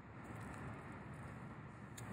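Quiet outdoor rumble of wind on the microphone, ending in one sharp click as a golf club strikes the ball.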